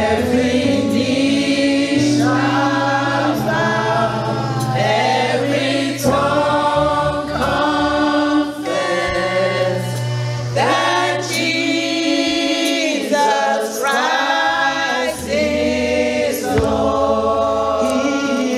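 A woman leading a gospel worship song, singing through a microphone and PA over a sustained low accompaniment, with held and sliding sung notes.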